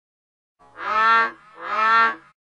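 Two drawn-out, moo-like vocal calls in a row, each with a bending pitch, starting about half a second in.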